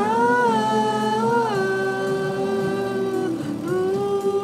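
A woman singing one long held note over an instrumental backing. The note steps down about one and a half seconds in, breaks off a little after three seconds, and a new note begins near the end.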